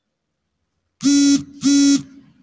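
About a second in, two loud, short buzzes at one steady low pitch, back to back.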